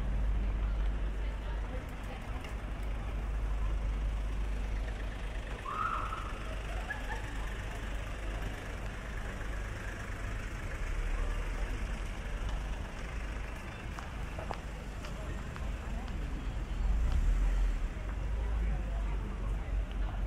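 City street ambience: a steady low rumble of traffic with pedestrians' voices passing by. A short high chirp sounds about six seconds in, and the rumble swells briefly near the end.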